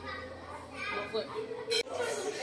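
Children's voices talking and calling out at play, with a brief sharp noise near the end.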